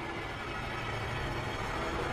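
A steady low rumble from a film soundtrack, growing slowly louder.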